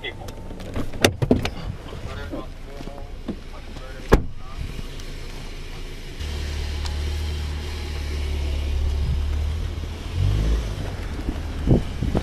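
Handling noise on a body camera: clicks and knocks as a car door is opened and a person gets out, with one sharp knock about four seconds in. A steady low rumble starts about six seconds in and fades near the end.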